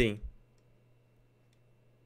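A man's word trails off in the first moment. Then comes near silence over a faint steady electrical hum, with a couple of faint clicks.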